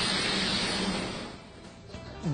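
A 65,000 BTU wok burner's flame roaring under a wok as food sears, a steady rushing noise that dies away about a second and a half in.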